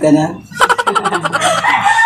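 A short laugh, then a loud drawn-out call starting about half a second in and lasting about a second and a half, its pitch rising and then holding.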